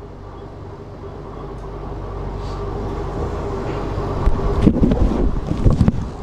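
Low rumbling noise on the microphone that grows steadily louder, then a run of irregular low thumps and knocks in the last two seconds.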